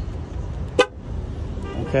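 A 2016 Ram 1500's horn gives one short chirp about three quarters of a second in, answering a press of its key fob: the newly connected battery is powering the truck again.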